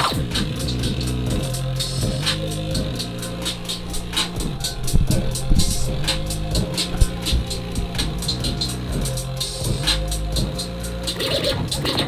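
Hip-hop instrumental beat with a steady bass line and a rapid hi-hat pattern, starting abruptly, with DJ record scratching over it.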